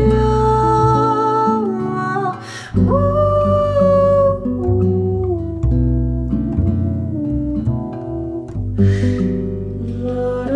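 Small jazz ensemble playing: a woman's voice sings long held wordless notes over plucked double bass and acoustic guitar. The melody line breaks briefly twice, about two and a half seconds in and again near nine seconds.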